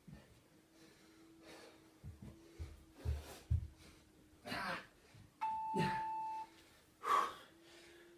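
Hard, breathy exhalations and dull thumps of hands and feet landing on a carpeted floor during walkouts. About five and a half seconds in, one steady electronic beep sounds for about a second.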